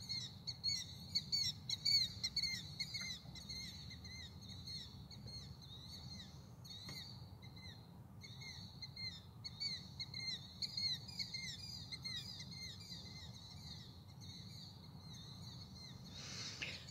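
Unidentified night birds calling: a continuous run of short, high chirps, several a second, with a brief pause about halfway through. A low steady hum runs underneath.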